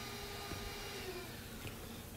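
Liquid poured from a plastic pitcher through a funnel into a glass flask: a steady, faint pouring sound.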